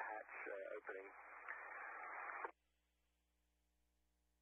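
A voice over a narrow-band radio link with a hiss behind it, the transmission cutting off abruptly about two and a half seconds in, leaving near silence.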